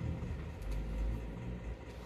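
Soft handling noise as a fleece garment is moved about on a table, over a steady low rumble and faint hum, with a light click about a third of the way in.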